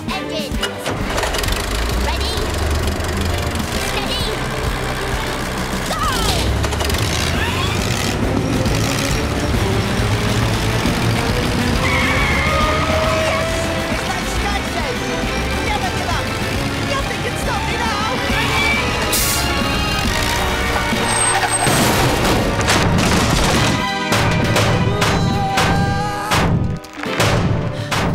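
Cartoon soundtrack: background music mixed with a busy run of sound effects, including a low rumble and several sharp knocks or impacts.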